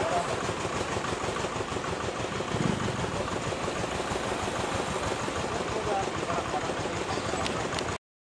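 Steady low mechanical rumble with a fast, even pulse, like an engine running, with faint voices over it.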